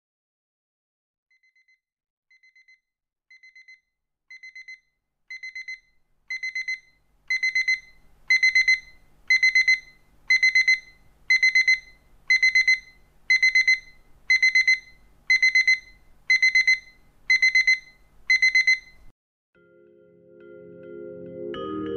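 Electronic alarm clock beeping: a high-pitched cluster of quick beeps once a second, starting faint about a second in and growing louder until it is steady and loud, then stopping shortly before the end.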